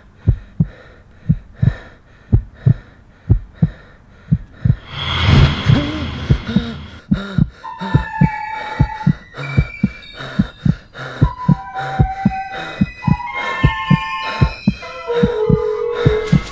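Suspense score built on a regular heartbeat-like thumping, with a rushing swell about five seconds in, after which high held notes of tense music play over the beat.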